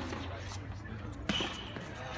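Tennis rally: one sharp pop about a second and a half in as the tennis ball is struck on the far side of the court, over a low steady murmur of background voices.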